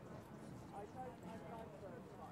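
Faint, indistinct voices of several people at a distance, over a steady low outdoor background rumble.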